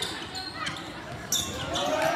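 Basketball game on a hardwood gym court: the ball knocks and sneakers squeak, with players' and spectators' voices echoing in the large gym. The clearest knock comes a little over a second in.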